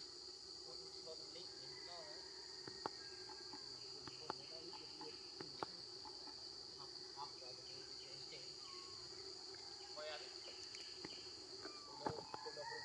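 A faint, steady chorus of insects: a continuous high-pitched buzz with no break, and a few sharp clicks in the first half and faint short chirps scattered over it.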